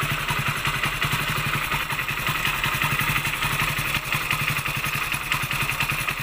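Hero BS6 100 cc single-cylinder fuel-injected motorcycle engine idling with a steady, even beat. It holds the factory-set idle speed, which loosening the idle-adjust nuts on the throttle body does not lower.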